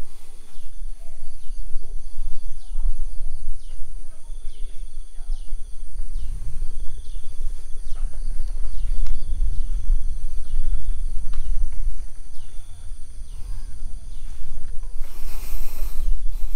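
Wind rumbling on the microphone, with a steady high insect drone and short falling chirps repeating about once a second.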